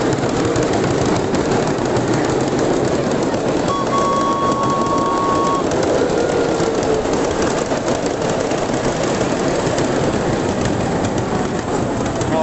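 Ride-on miniature train running along its track, a steady loud rolling noise of wheels on rails. A short steady high tone sounds about four seconds in and lasts under two seconds.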